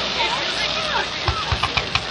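Fireworks going off in a quick run of short sharp thumps and pops in the second half, over a steady background of crowd voices and shouts.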